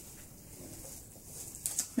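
A plastic candy wrapper handled in the fingers, giving a few brief faint crackles near the end over quiet room tone.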